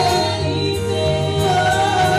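A gospel praise team of several voices singing together in harmony through microphones, holding long notes over a low, steady accompaniment.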